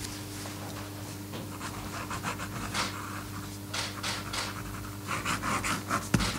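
Ballpoint pen scratching across paper in short, uneven strokes as a document is written on and signed, over a steady low electrical hum.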